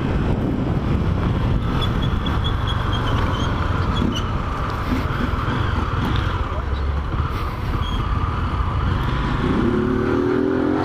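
Motorcycle engine running steadily under the rider, with wind rushing over the onboard microphone while riding through traffic.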